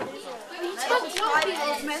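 Indistinct chatter of several people talking.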